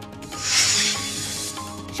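A news-bulletin music bed with a whooshing transition sound effect, a rushing swell that rises about half a second in and fades over about a second, marking the change between stories.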